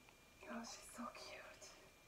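A woman whispering softly, a few words lasting just over a second, starting about half a second in.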